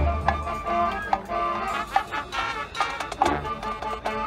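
Marching band playing: sustained brass and woodwind notes over drum hits, opening on a loud low brass note.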